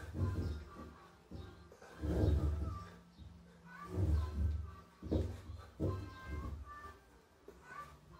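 A man's heavy, forceful breaths and grunts of effort while doing handstand push-ups, coming in bursts about every one to two seconds as he presses through each rep. Faint background music runs underneath.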